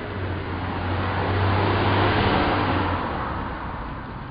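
A car passing by: a low engine hum and road noise swelling to a peak about halfway through, then fading away.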